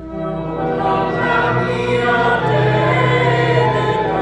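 Many voices singing a hymn in chorus, sustained chords held under the melody; a brief drop at the very start as one line ends and the next begins.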